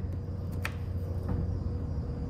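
Steady low hum with a faint higher steady tone over it, and a single sharp click about two-thirds of a second in.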